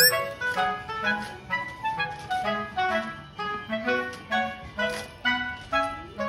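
Light background music made of short, bouncing melodic notes in an even rhythm. A bright chime-like sound effect rings out right at the start.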